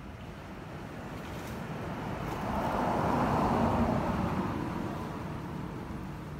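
A road vehicle passing by, its noise swelling to a peak in the middle and then fading away.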